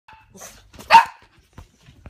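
Small dog barking, with one sharp, loud bark about a second in and fainter ones before it.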